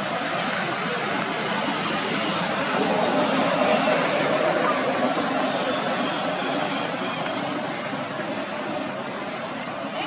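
Steady outdoor background noise with indistinct voices, swelling a little a few seconds in.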